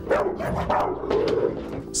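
American bulldog growling and barking in a rough, continuous run of repeated sharp outbursts: the dog's protective aggression.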